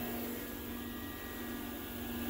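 Steady background hum with a faint hiss, and no distinct event.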